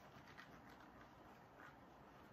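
Near silence: room tone, with a couple of very faint light ticks.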